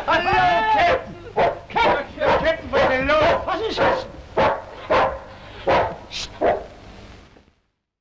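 A dog barking in a rapid series of short barks, about two a second, heard on an old film soundtrack. The barking fades out and the sound drops to silence shortly before the end.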